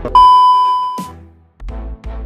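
A TV test-pattern beep used as a transition sound effect: one steady, high-pitched beep about a second long that fades away. Electronic background music with a pulsing bass beat stops under it and comes back near the end.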